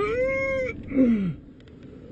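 A cab driver's strange, drawn-out cat-like wailing cry: a long 'heeey' that rises, holds high and falls, then a shorter cry sliding steeply down in pitch about a second in. It is loud and stops before the end.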